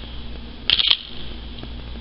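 Brief handling noise from an enamel pin held in the hand: a short cluster of clicks about two-thirds of a second in, over a steady low hum.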